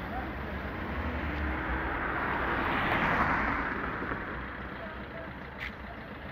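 A car passing along the street: its tyre and engine noise swells to a peak about three seconds in, then fades away.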